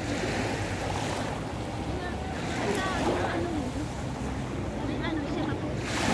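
Sea water washing at a beach, with wind buffeting the microphone and faint voices in the background.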